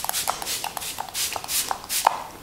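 Lips pressing and smacking together to spread freshly applied lipstick: a quick run of short, wet clicks and smacks, several a second.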